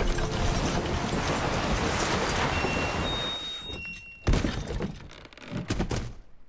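Sound effects of a wooden sleigh crash-landing in snow: a loud, noisy rush of sliding and scraping that fades out over the first few seconds. A single sharp knock follows, then a few smaller clatters of debris settling near the end.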